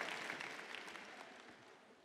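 Audience applause dying away, fading steadily until it is gone near the end.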